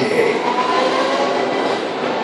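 Formula E electric race cars going by, a steady high electric-motor whine over a rushing noise, played over a hall's loudspeakers.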